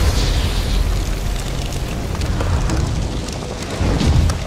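Straw laid on grass burning, a loud steady rumbling noise that is heaviest at the low end.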